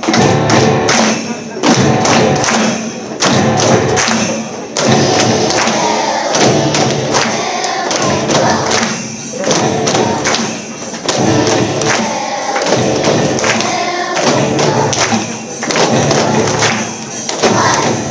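Elementary-school children's choir singing a holiday song together, over an accompaniment with a steady thudding beat.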